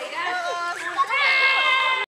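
Children's voices talking over one another, then a loud, high-pitched child's shout held steadily from about a second in.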